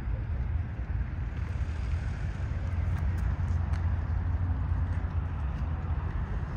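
Low, steady rumble of distant jet airliner engines, mixed with wind on the microphone.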